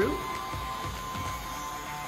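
Stepper motors of a Modix Big-120X large-format 3D printer driving the print head across the bed to the front-right leveling screw, with a steady whine.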